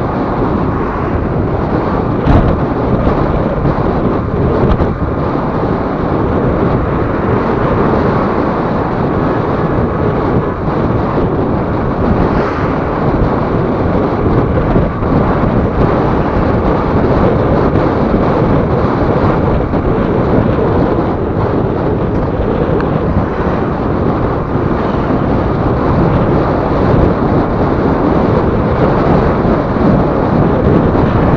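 Steady wind noise buffeting the microphone of a motorcycle-mounted camera at road speed, mixed with the motorcycle's running and road noise.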